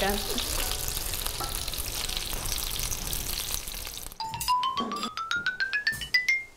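Egg-coated turkey schnitzels frying in a pan on the stove, a steady sizzle. About four seconds in it cuts off and a quick rising run of bell-like mallet-instrument notes plays, a musical transition.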